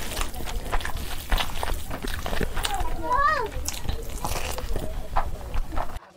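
Close-miked, wet chewing and lip-smacking of a mouthful of chicken curry and rice, with many small clicks throughout. About three seconds in there is a brief hummed 'mm' that rises and falls.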